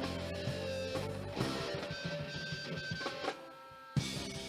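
Live band music with guitar. Near the end the music falls quiet for about half a second, then comes back in abruptly.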